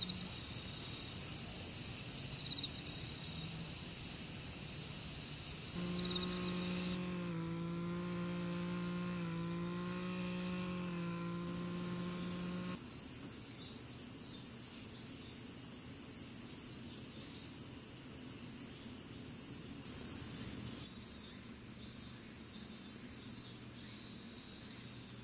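Chorus of summer-evening insects, crickets or similar, as a steady high-pitched trill. It drops out for a few seconds about seven seconds in, then returns, a little quieter near the end. From about six seconds in, a held low tone with several overtones, wavering slightly, sounds for about seven seconds.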